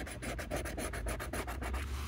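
Scratch-off lottery ticket being scratched with a round scratcher disc: fast, even back-and-forth strokes scraping the coating off the card.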